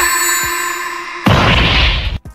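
Anime fight sound effects: a sudden ringing tone held for over a second, then a loud noisy blast like an explosion about a second and a quarter in.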